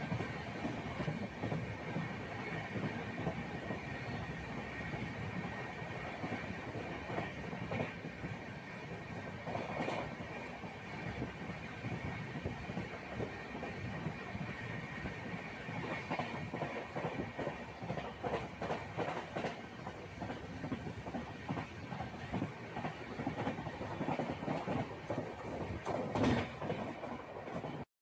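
Passenger train running along the track, heard from inside the coach: a steady rumble with steady tones high up and scattered clacks of the wheels over rail joints. It cuts off suddenly near the end.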